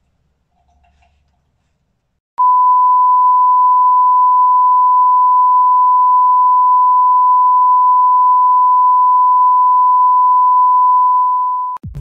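A loud, steady censor bleep: one unwavering high tone that starts about two seconds in, holds for about nine seconds and cuts off sharply just before the end, blanking out a ranting string of insults.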